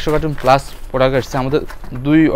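A man talking continuously, with no other sound standing out.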